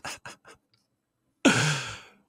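A man's laughter trailing off in a few short breathy bursts, then about one and a half seconds in a loud, voiced sigh.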